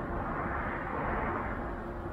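Rushing noise of a passing vehicle in the background, swelling about a second in and then fading.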